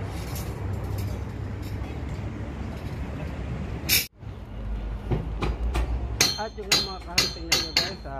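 Outdoor construction-site background noise with a low rumble of wind on the microphone. About four seconds in there is a sharp click, followed by a run of sharp clicks or taps during the second half.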